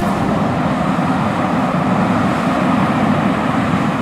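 Combine harvester running steadily as it harvests corn, an even machine noise with no changes.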